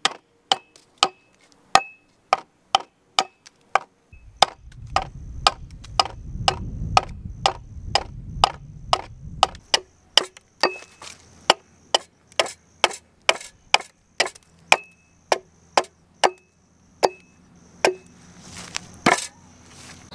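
Broad axe hewing the side of a short log: a steady run of sharp chops into wood, about two a second, some with a brief ring from the blade, spacing out near the end.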